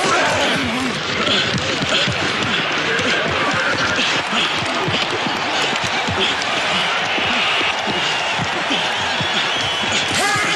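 Football game field sound: a steady stadium crowd roar with players' shouts and repeated thuds of padded bodies colliding on the field.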